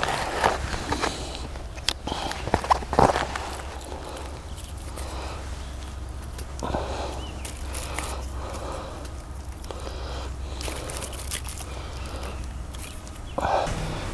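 Dry twigs being handled and fed into a small wood-burning camp stove: scattered sharp clicks and light wooden knocks, the loudest about two to three seconds in, over a steady low rumble.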